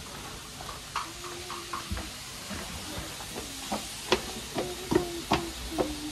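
Hot oil sizzling in a pot of deep-frying food: a steady hiss with scattered sharp pops and crackles.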